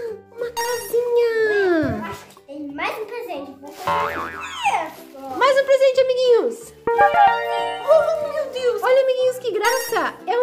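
Children's background music with a steady bass pattern, overlaid by cartoonish sound effects whose pitch slides up and down.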